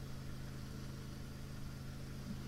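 A motor running steadily: an even low hum over a faint hiss, with no change in pitch or level.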